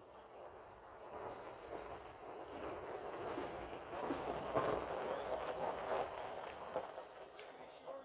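Electric-converted Mitsubishi L200 pickup rolling slowly across gravel, its tyres crunching, with a few knocks and rattles from the truck. The sound builds as the truck comes close about halfway through, then fades as it moves off.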